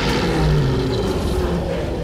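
A cartoon lion's long, low roar from a film soundtrack, loud and noisy, with the music having mostly dropped away.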